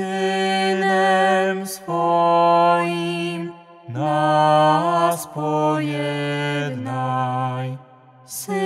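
Slow sung prayer chant: voices holding long notes with vibrato in phrases of a few seconds, with short breaths between them.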